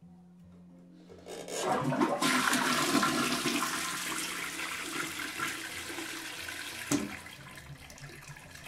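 Toilet being flushed: water rushes into the bowl starting about a second in, loudest at first and then slowly easing off as the bowl drains and refills. A short knock sounds near the end.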